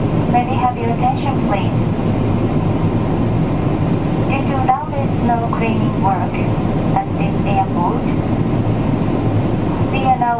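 Steady cabin noise of a Boeing 777-300ER in flight, with a cabin crew announcement heard over the PA in short spells.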